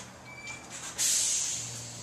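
A sudden hissing burst about a second in, fading away over the next second, over a low steady hum.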